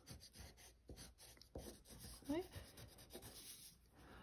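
Faint, repeated short strokes of a wax crayon scratching on paper as lines are swept down one after another.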